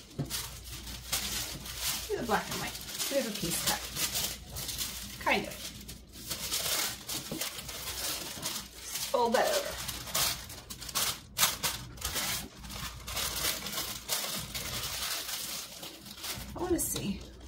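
Tissue paper crinkling and rustling in many short crackles as it is folded by hand around an item, with a few brief wordless vocal sounds.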